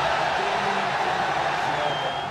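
A loud, even wash of street and crowd noise around a slow-moving campaign vehicle, with a loudspeaker campaign song running underneath.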